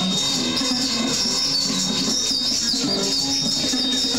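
Live band music with guitar, dense and steady, with a thin, steady high whine underneath.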